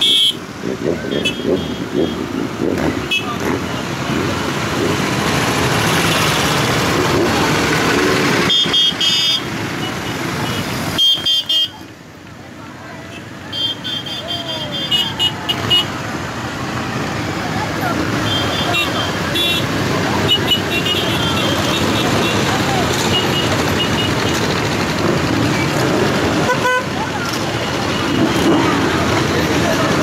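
A long stream of motorcycles riding past at low speed, their engines running and revving, with short horn toots sounding again and again. The noise dips briefly about twelve seconds in, then the bikes keep coming.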